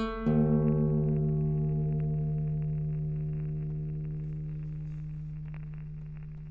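Slow plucked guitar music: a low note struck just after the start rings on and slowly fades, over a steady low hum.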